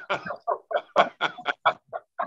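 A person laughing: a quick run of short laughs, about five a second, stopping near the end.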